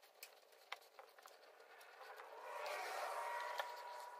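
Faint scattered light ticks and taps. Over the second half a wash of noise swells and fades, carrying a steady tone.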